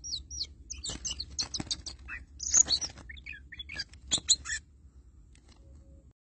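Oriental magpie-robin giving a rapid run of high whistled notes with quick pitch slides, broken by short harsh chirps, stopping about four and a half seconds in.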